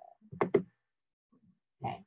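A person's short wordless vocal sound, grunt-like, about half a second in, heard through a video-call connection. A spoken word begins near the end.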